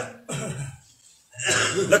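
A man clearing his throat in two short rasps with a brief silence between them.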